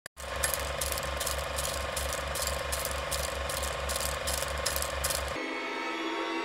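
Rhythmic mechanical ticking, about four ticks a second, that stops suddenly about five seconds in and gives way to a quieter steady tone.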